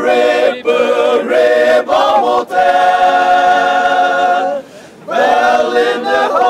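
Group of Chakhesang Naga men singing a local folk song unaccompanied. Short sung phrases give way to a long held note in the middle, then a brief pause before the singing resumes.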